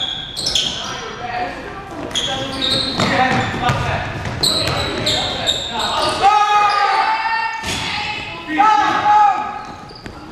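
Basketball game sounds echoing in a gym: the ball bouncing on the court, short sneaker squeaks and players' voices. The loudest are two long held calls, one about six seconds in and another near nine seconds.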